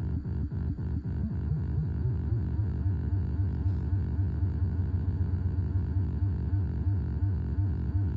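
No-input feedback-loop noise run through guitar effects pedals (Hotone tremolo, Boss SL-2 Slicer, Alexander Syntax Error): a low buzzing drone chopped into fast, even pulses, about five a second. At first each pulse dips in pitch; about two seconds in they settle into shorter, steadier pulses.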